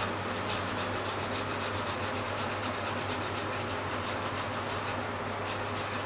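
Peeled Japanese mountain yam (yamaimo) being grated on a plastic grater: a steady, rapid rasping of several strokes a second as the yam is rubbed back and forth over the teeth.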